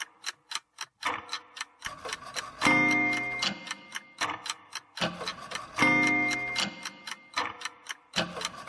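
Instrumental song intro built on a clock ticking, about four ticks a second, with a sustained chord struck twice, about three seconds apart.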